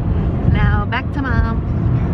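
Steady low road and engine rumble inside a moving car's cabin. A woman's voice sounds briefly without words about half a second to a second and a half in.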